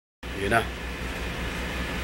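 A short spoken phrase about half a second in, over a steady low hum and room noise.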